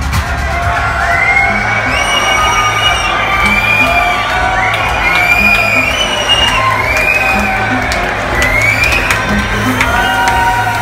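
Techno over a club sound system in a breakdown: the kick drum drops out as it begins, leaving a steady low bass note. Over it come repeated high rising whoops and cheers from the crowd.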